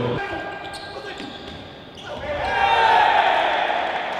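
Indoor sports-hall crowd noise with shouting voices. It is quieter at first, then swells loud about two seconds in and peaks near the end.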